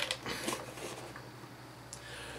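A few light clicks and taps of a hollow clear plastic capsule being handled and turned over, mostly in the first second.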